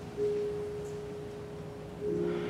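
Soft organ music: a single note held steadily, entering a moment in, with a fuller chord returning right at the end.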